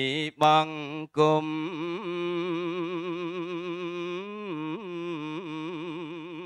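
Tipitaka chanting in Pali by a male voice, held on one low note with a wavering pitch and then moving through a few slow turns of melody. Two sharp pops with brief dropouts break the chant in the first second or so.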